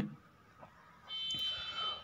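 Near silence, then about a second in a steady, high alarm- or buzzer-like tone of several pitches at once, lasting just under a second.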